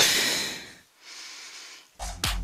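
A person's hard breath out into a close headset microphone, winded from exercise, fading over about the first second, followed by a quieter breath in.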